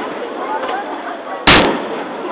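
Aerial firework shell bursting with one sharp, loud bang about one and a half seconds in, over a steady murmur of crowd voices.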